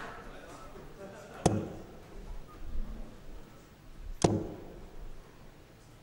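Two steel-tip darts thudding into a Unicorn bristle dartboard, the first about a second and a half in and the second nearly three seconds later, each a short sharp strike over a low hall murmur.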